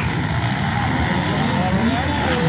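Several motocross dirt bike engines running and revving together as the bikes race around the track, a steady mix with faint rising and falling pitches.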